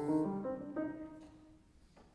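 Steinway grand piano playing a few soft accompaniment chords that ring and die away, fading out by about halfway through.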